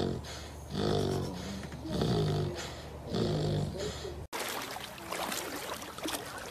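Sleeping puppy snoring, one pitched snore about every second. After about four seconds it cuts off suddenly and is replaced by the noisy splash of water churned by a swimming dog.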